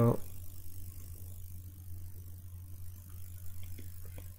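Steady low hum, with a few faint keyboard clicks near the end.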